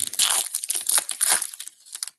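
Foil wrapper of a trading-card pack being torn open and crumpled by hand: a run of crinkling, crackling rustles that thins out and fades near the end.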